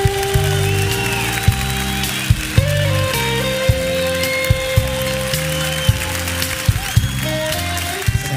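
Instrumental introduction of a slow romantic ballad played by a band, with no singing: long held notes over a pulsing bass line, with short percussive ticks scattered through.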